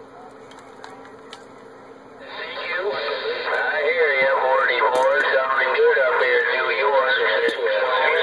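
Ranger RCI-2970N2 radio receiving: about two seconds of faint static, then a distant operator's voice comes in through its speaker, thin and narrow-sounding, and keeps talking.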